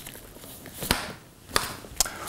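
Two sharp taps about two-thirds of a second apart: cards and envelopes being handled and set down on a glass tabletop.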